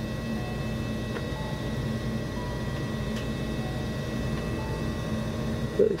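A steady low hum fills the background, with a few faint, brief higher tones over it.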